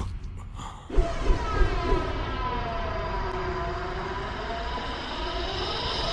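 A few knocks about a second in, then a long wailing tone of several pitches that dips slowly and rises again.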